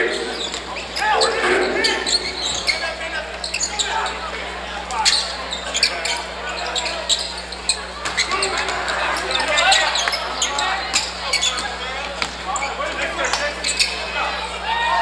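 A basketball dribbling on a hardwood gym floor as a series of sharp bounces, over the chatter and calls of spectators in a large, echoing gym.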